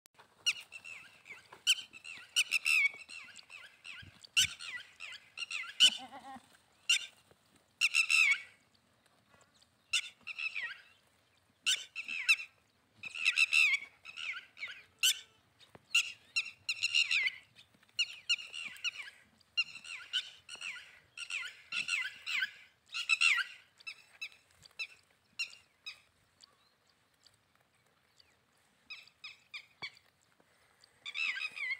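Birds chirping and calling in short, high-pitched bouts repeated every second or so.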